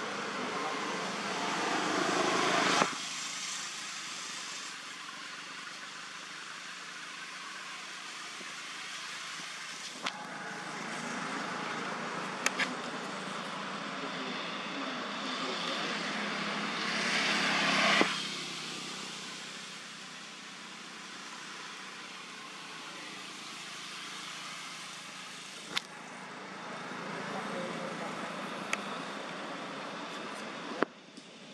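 Outdoor background noise that builds up twice over several seconds and then drops off abruptly, with a few sharp clicks scattered through it.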